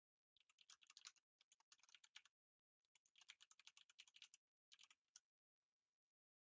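Faint typing on a computer keyboard: three runs of rapid keystrokes separated by short pauses.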